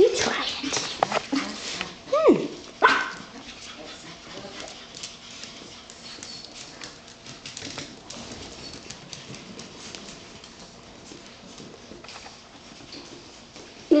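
Pomeranian puppy giving a few short cries and a rising-and-falling whine in the first three seconds, then quieter, with faint scattered clicks and taps.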